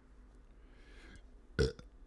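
A single short burp from the man at the microphone, about one and a half seconds in, over faint room tone.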